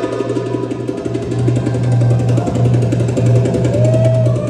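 Belly-dance music led by a goblet drum (darbuka) played in a fast, even roll over a steady low tone.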